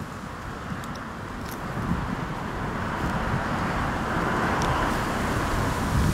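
A car passing on the street, its road noise building gradually to loudest about five seconds in, over a steady low rumble.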